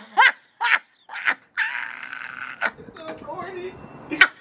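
People laughing: two short, quick bursts of laughter, then a longer breathy laugh about halfway through, with a few small chuckles after.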